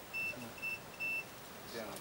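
Digital multimeter's continuity beeper giving three short, high-pitched beeps in quick succession as the probes make and break contact across a cable conductor. The beeps signal continuity, here used to find the coax cable's outer conductor.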